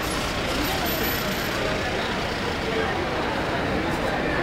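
A line of cars passing close by, one after another, with engine and tyre noise, over the voices of a watching crowd.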